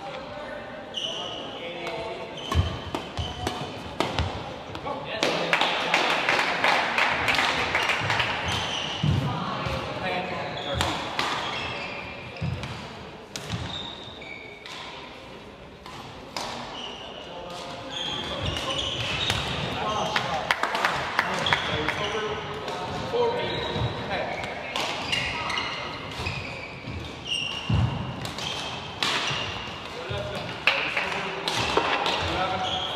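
Badminton play: sharp racket hits on the shuttlecock, shoe squeaks and footfalls of the players on the court mat, with background voices.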